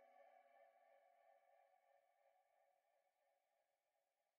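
Near silence: the very faint tail of the song's last chord fades away in the first couple of seconds.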